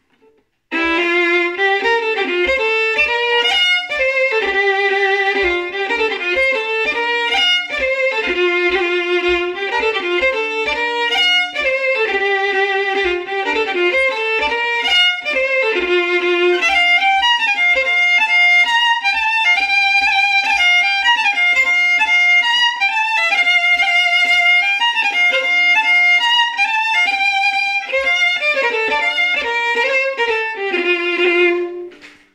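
Solo fiddle playing a Scottish strathspey, starting about a second in, with a steady low tap keeping the beat at about two to three a second.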